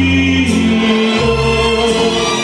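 Man singing Mexican-style music into a microphone over an amplified accompaniment, holding long notes over a stepping bass line.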